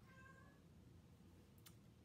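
A domestic cat meowing once, faint and short, just after the start.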